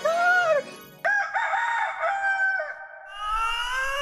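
Rooster crowing: a short call, then a crow of several quick notes ending in a longer held note. Near the end comes a rising, whistle-like glide.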